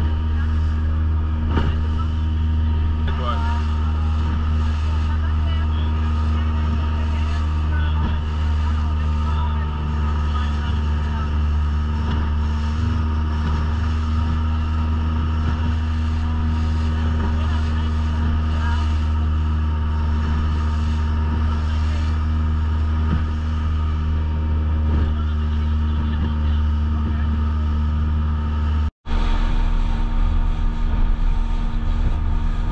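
Small open boat's motor running steadily at cruising speed across choppy water, a loud, even drone with water and wind noise over it. The sound cuts out for an instant near the end.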